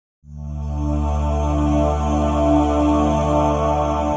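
Intro music: sustained ambient chords over a low steady drone, starting a quarter second in and swelling up within about half a second.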